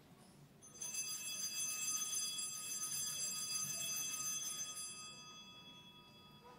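Altar bell ringing at the elevation of the consecrated host, with several high, clear tones. It starts about a second in, holds for about four seconds and then fades away.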